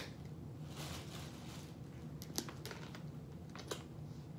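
Wet mouth sounds of eating the jelly-like pulp of a kiwano horned melon straight from the rind: a soft slurp about a second in, then a few sharp smacks and clicks in the second half.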